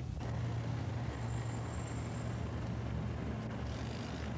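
Steady low rumble of motor traffic, with no sharp events.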